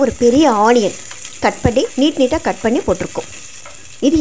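Sliced shallots sizzling as they are scraped into hot oil in an aluminium pressure cooker. A wavering, pitched voice is louder than the sizzle through most of the first three seconds.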